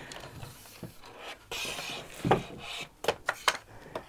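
A wooden scroll frame being pulled out of a wooden rack: wood sliding and rubbing, a knock about halfway through, then a few sharp clicks of wood against wood.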